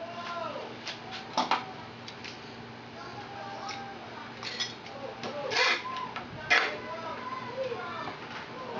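Steel bar clamps clicking and clanking as they are fitted and tightened onto a wooden jig: a few sharp metallic clicks, the loudest about a second and a half in and again around five and a half and six and a half seconds.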